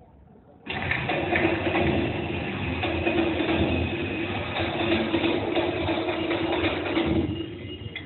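A loud, steady, engine-like mechanical drone with a held low hum starts abruptly just under a second in and cuts off about a second before the end.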